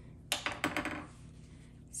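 Small curved embroidery scissors clicking: a quick cluster of sharp clicks in the first second, as the scissors are worked and handled while trimming in the hoop.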